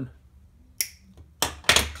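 A wire cutter snipping the end of a steel guitar string, a short sharp click about a second in, followed by a couple more clicks of the tool near the end.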